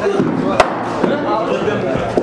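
Voices talking, with one sharp crack of an impact about half a second in.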